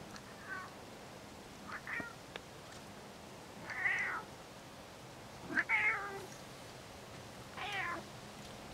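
A domestic cat meowing repeatedly, about five meows, the loudest ones near the middle.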